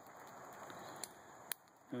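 Faint outdoor background hiss with two brief sharp clicks, about one and one and a half seconds in.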